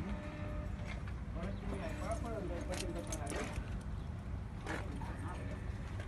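BMW K100's inline-four engine idling with a steady low rumble, with people talking over it and a few light clicks.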